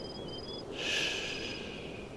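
Night ambience of crickets chirping in short, repeated high chirps. A breathy hiss lasting about a second swells up near the middle, the loudest sound here.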